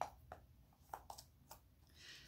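Faint, scattered ticks and crackles of a sticky adhesive tag being peeled off a cup koozie by hand.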